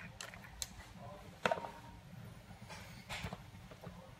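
A few small clicks and knocks from a glass sauce bottle being handled and tipped to pour over a pulled pork slider. The sharpest knock comes about a second and a half in, and a faint cluster of small sounds follows near the three-second mark.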